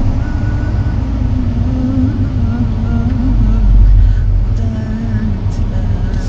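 A woman singing a Turkish arabesk song without accompaniment, holding one long wavering note for about three seconds and then a shorter one near the end. Underneath is the steady low rumble of a car cabin on the move, which swells briefly in the middle.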